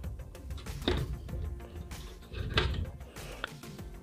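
Cardboard box lid being worked loose and lifted open, with two short scraping handling sounds about one second and two and a half seconds in, over quiet background music.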